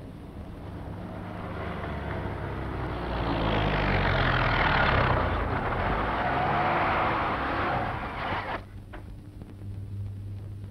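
Motor vehicles driving past on a road, engine note rising and falling as they go by. The sound swells to a peak about halfway through, then cuts off abruptly shortly before the end.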